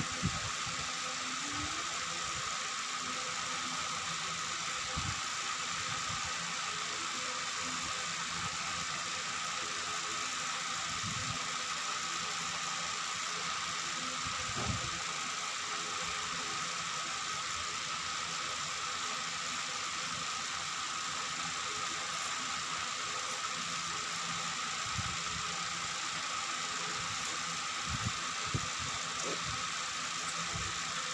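Steady background hum and hiss, with a few soft knocks now and then.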